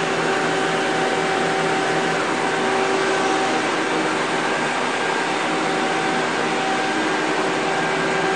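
Steady machine whir with several held tones from a running Mazak Quick Turn Nexus 200 II CNC lathe, unchanging throughout.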